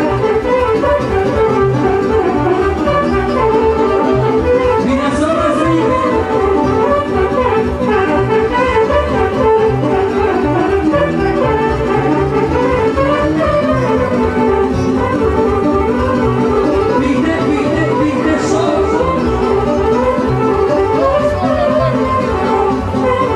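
A live lăutari band playing a Romanian folk dance tune, loud and continuous over a steady, driving beat.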